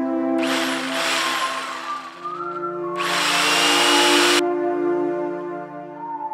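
Erbauer jigsaw cutting a PVC sheet in two bursts of about a second and a half each, starting about half a second in and again about three seconds in.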